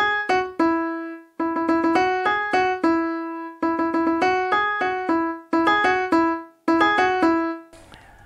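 Software piano played from a MIDI keyboard: a draft chorus melody of quick, repeated short notes on three neighbouring pitches. It comes in short phrases with brief pauses between them.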